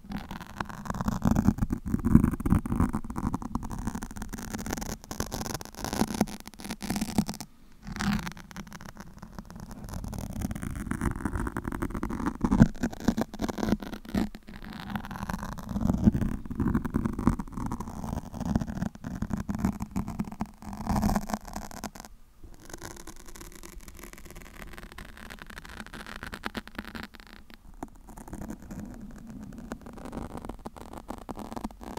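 Fingernails scratching and rubbing on a foam microphone windscreen right at the microphone, a dense rustling crackle with a heavy low rumble. It comes in waves with brief pauses about 8 and 22 seconds in, and is softer over the last third.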